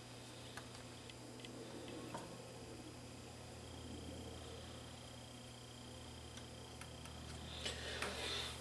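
Faint scattered small ticks and clicks as the DAT deck's tape transport is handled and cleaned, over a steady low hum.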